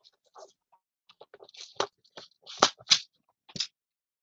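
Hands handling card stock and small crafting pieces: soft, scattered rustling with four short, sharp clicks in the second half.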